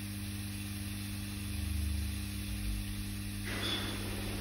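Steady low electrical hum, with a low rumble near the middle and a hiss that comes in about three and a half seconds in.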